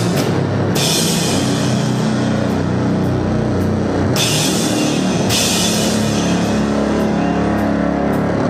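Loud live heavy music in a grindcore/sludge style: a drum kit pounding under a dense wall of bass. Cymbals crash in stretches of a second or so, about a second in, around four seconds in, and again after the end.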